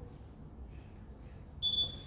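A single high-pitched electronic beep, steady in pitch and lasting just under a second, starting near the end over faint room noise.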